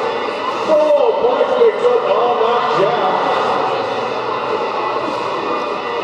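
Crowd chatter in an echoing sports hall, with bits of an indistinct voice over it in the first half.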